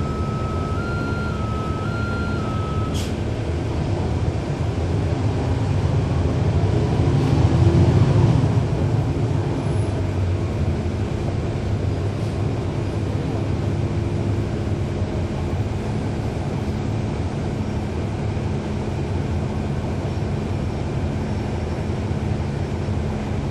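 Cummins ISL9 diesel engine of a NABI 40-foot transit bus running under way, with a steady low rumble that grows louder for a few seconds midway through, then eases back. The ZF Ecolife automatic transmission is virtually silent. A two-pitch electronic tone alternates for about three seconds at the start.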